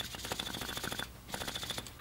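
A hand shock pump working on a mountain bike's Fox air rear shock at its Schrader valve: a fairly faint run of quick rasping clicks with a faint squeak, breaking off briefly just past the middle.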